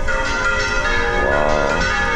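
Church bells of Córdoba's cathedral tower swung full circle, turning over rather than being struck in place, ringing continuously with many tones overlapping.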